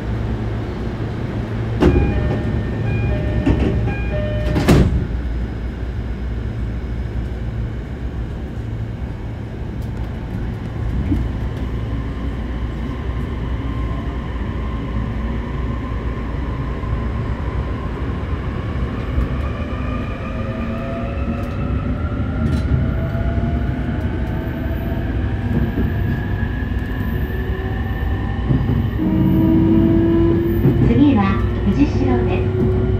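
Inside a motor car of a JR East E531-series electric train with a steady low hum while standing. A short repeated door chime sounds and the doors shut with a knock about five seconds in. Later the train pulls away, and its inverter and traction motors whine in several tones that climb slowly in pitch as it accelerates.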